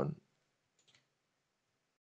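Near silence with a single faint computer-mouse click a little under a second in.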